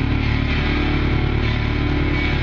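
Live rock band playing loud: electric guitar and keyboard holding a steady, droning chord.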